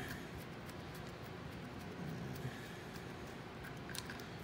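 Faint scattered ticks and clicks of metal brake-line fittings being handled and worked loose on an ABS pump, over a low room hiss.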